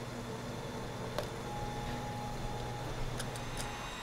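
A steady low hum with one light click about a second in and a faint thin tone through the middle.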